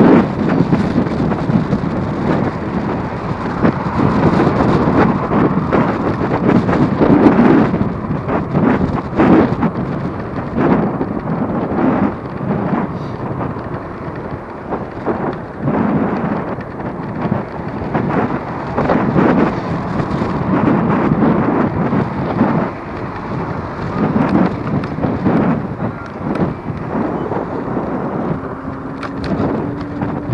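Wind buffeting the microphone of a rider on a moving electric scooter: a loud, gusting rumble that swells and dips throughout.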